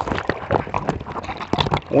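Irregular light knocks and taps: handling noise of a landing net close to the microphone.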